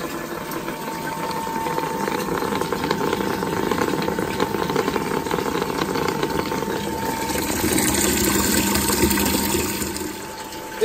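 Water rushing from a tap into a tank at a boosted flow of about 12 litres a minute, driven by a Salamander HomeBoost mains booster pump. The rush of water grows louder over the first few seconds, swells again near the end and then eases, with a faint steady hum beneath it.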